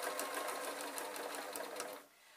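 Domestic electric sewing machine stitching steadily through two layers of fabric with wadding between them: a motor hum under a rapid, even clatter of the needle, stopping right at the end.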